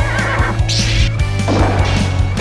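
A cartoon horse neighing over montage music with a steady bass beat; the whinny comes about half a second to a second in.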